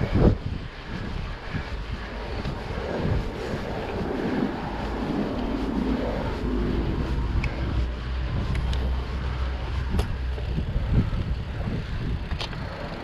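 Wind on the microphone and tyres rolling on asphalt as a mountain bike runs downhill, with a few sharp clicks and knocks from the bike, the loudest just after the start.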